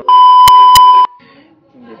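A loud, steady electronic beep, a single pure tone lasting about a second, with two sharp clicks about a third of a second apart inside it, then cut off abruptly.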